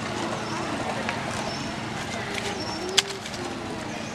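Outdoor ambience with distant voices and several low rising-and-falling calls, over a steady low hum. A single sharp click about three seconds in is the loudest sound.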